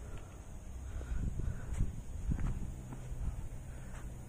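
Footsteps and scuffs on a dry dirt trail, with several heavier steps between about one and three seconds in, over a constant low rumble.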